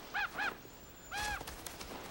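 Geese honking: two short honks in quick succession, then a longer honk about a second later.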